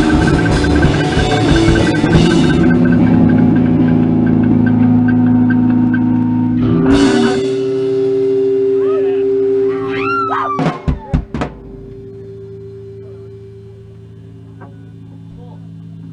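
Live noise-rock improvisation with drums and guitar ending. A dense wall of noise thins after about two and a half seconds to sustained droning tones. Around ten seconds in come falling whistle-like glides and a few sharp hits, and then a quieter steady low hum lingers.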